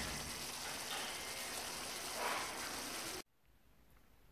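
Faint, steady hiss of shrimp cooking in sauce in a skillet. It cuts off abruptly about three seconds in.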